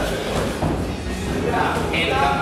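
Dull thuds of boxing gloves landing punches during sparring, with voices and music in the background.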